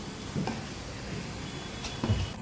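Spice masala frying in a kadai with a steady, soft sizzle, and a single light knock about half a second in.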